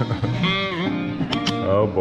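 A jazz record playing through a portable suitcase turntable's speaker, its pitch bending and wobbling because the turntable is running on the wrong power adapter, so the music sounds crazy. Two sharp clicks about a second and a half in.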